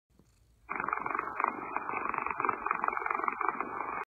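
A long-haired Persian cat purring: a rapid, even pulsing that starts about two-thirds of a second in and keeps on steadily.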